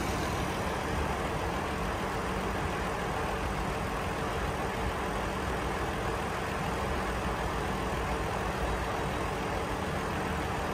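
A 2020 Lexus RX 350's 3.5-litre V6 engine idling steadily, with a low even hum.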